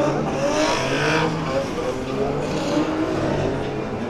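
Drift car engines revving, their pitch rising and falling, with a burst of tyre squeal about a second in.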